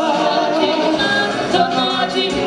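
A group of performers singing a song together into microphones, several voices at once in chorus.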